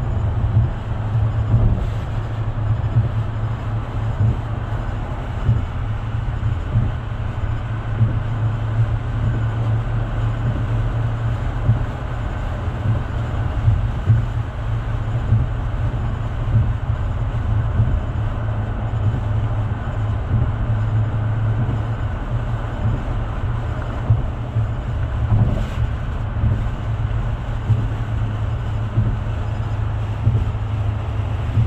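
Dodge Scat Pack's 392 Hemi V8 cruising in eighth gear, a steady low engine drone mixed with road noise, heard inside the cabin.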